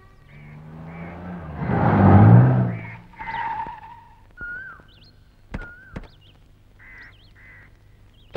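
A small car, a Maruti 800 hatchback, drives up and its engine swells to a peak about two seconds in, then cuts out. Two car-door thunks follow about half a second apart, with short bird chirps in the background.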